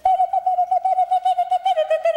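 A woman's voice singing a cappella in rapid staccato syllables on one pitch, about eight pulses a second.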